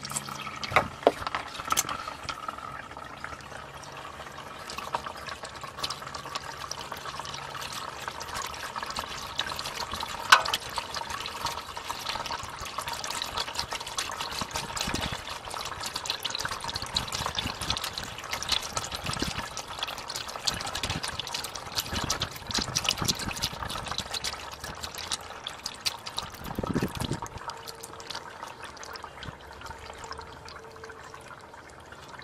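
A steady stream of used motor oil and kerosene flush mixture pouring from an oil pan's drain hole and splashing into the oil already pooled in a drain pan. A few sharp clicks come in the first two seconds.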